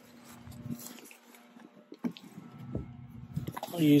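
Faint handling and rustling noises with a few soft clicks, over a low steady hum.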